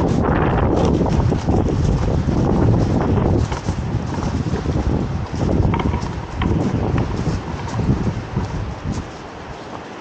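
Strong wind buffeting the microphone as a heavy low rumble, then coming in uneven gusts and easing near the end.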